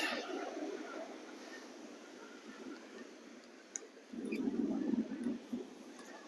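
Steady wash of surf on a breezy beach, with wind buffeting the microphone in a louder gust from about four seconds in that lasts a second and a half.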